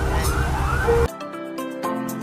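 A wailing, siren-like sound rising and falling about three times a second over a bass-heavy track cuts off abruptly about a second in. Soft music with sustained notes follows.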